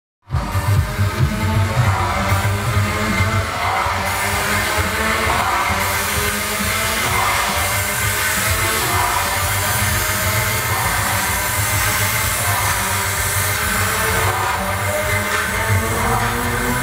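Loud electronic dance music from a party sound system, with a heavy bass and a steady beat.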